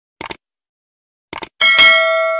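Subscribe-button sound effects: a short mouse-click sound, another about a second later, then a bright bell ding near the end that keeps ringing as it fades.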